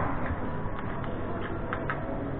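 A few light clicks and taps from a metal espresso portafilter full of ground coffee being handled, one sharper click at the start and fainter ones after, over steady café background noise.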